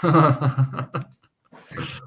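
A person's voice: a short pitched exclamation or laugh in the first second, a brief pause, then a breathy laugh near the end.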